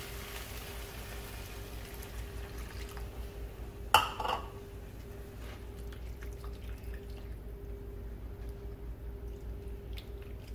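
Liquid sauce being stirred in a stainless steel sauté pan with a spatula, just after about a cup of water has been poured in. A single sharp clink of the utensil against the pan comes about four seconds in, over a steady low hum.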